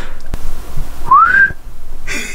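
A person whistles one short rising note about a second in, a 'hwi~' call aimed at rousing a sleeper.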